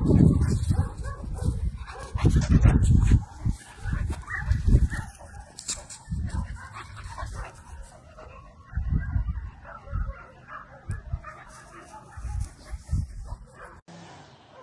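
A small dog barking in the open, with wind gusting on the microphone in loud low rumbles.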